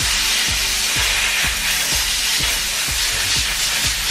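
Steam cleaner jet hissing steadily into a car's wheel arch, over background music with a steady beat.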